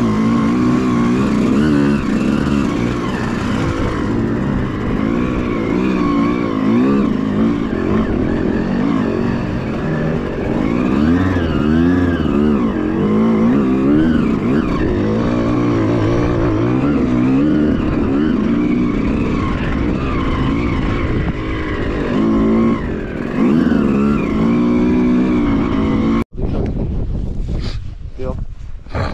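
Close two-stroke dirt-bike engine revving up and down in quick, uneven surges as it is ridden. The engine sound cuts off abruptly about two seconds before the end.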